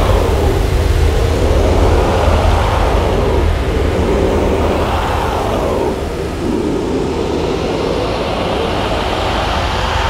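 Massed choir voices growling and rasping together in a dense, noisy mass over a deep rumble, swelling in slow sweeps that rise and fall in pitch every few seconds before settling after about six seconds.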